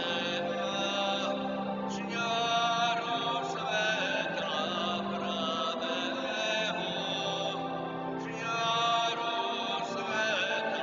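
A slow church hymn: voices singing long notes over held, sustained chords.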